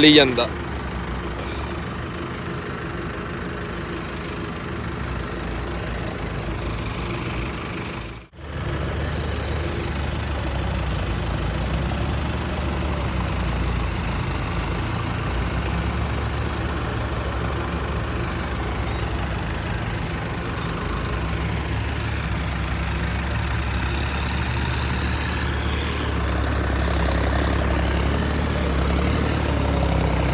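Tractor diesel engine running steadily under load as it drags a karah (land-levelling scraper) across a field, heard from the driver's seat. The sound briefly cuts out about eight seconds in.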